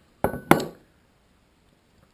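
Two sharp metallic clinks about a quarter second apart, the second louder, each ringing briefly, as metal parts are handled on a tabletop.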